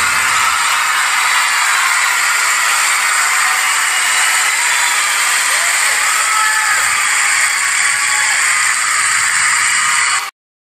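Live concert audience applauding and cheering: a dense, steady wash of clapping with a few voices calling out.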